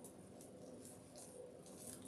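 Near silence: room tone, with a few faint soft rustles of artificial flower stems and greenery being pushed into a grapevine wreath.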